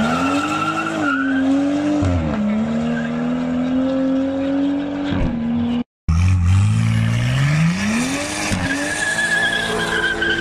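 BMW 1 Series hatchback doing a burnout: the engine revs up and is held high while the spinning rear tyres give a steady high squeal. The revs dip briefly and recover, fall away about five seconds in, and after a short break climb again and hold.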